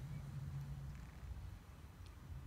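Newborn baby sucking at a milk bottle and breathing, heard as a low, steady rumble that eases off slightly near the end.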